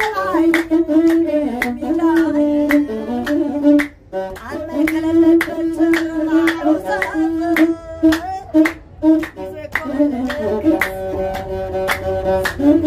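Masenqo, the Ethiopian one-string bowed fiddle, playing a melody with a voice singing and steady hand-claps about two to three a second. The music breaks off briefly about four seconds in.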